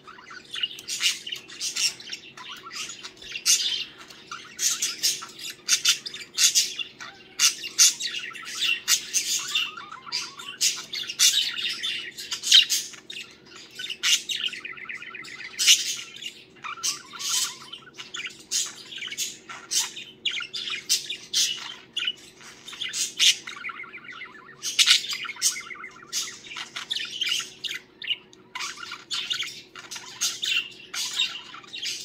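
Budgie singing: a continuous warbling chatter of quick chirps, squeaks and short trills, with hardly a break.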